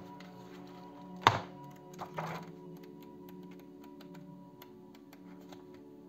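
Soft background music with steady held notes, under the handling of a coloring book's paper pages. One sharp thump about a second in is the loudest sound, followed by two softer taps or rustles a second later.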